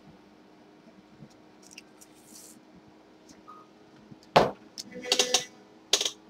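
Quiet room with a faint steady hum and a few small clicks, then a loud knock about four seconds in, followed by a quick clatter of knocks and rattles as objects are handled close to the microphone.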